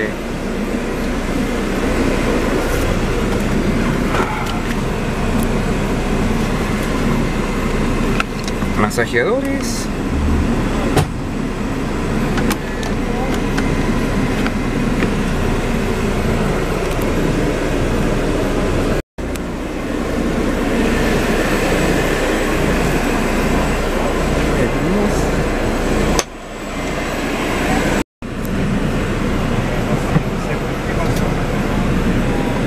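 Steady hum inside a coach cabin, with the bus engine and ventilation running and indistinct voices underneath; the sound breaks off briefly twice, about two-thirds of the way through and near the end.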